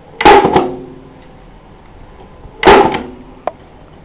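Two loud, sharp metallic strikes about two and a half seconds apart, each with a short ringing tail, followed by a light tick: fasteners being driven into the plywood of a rabbit nesting box.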